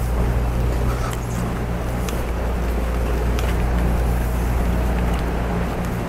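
Steady low idle hum of a 2017 Corvette Stingray's 6.2-litre LT1 V8, heard from inside the cabin.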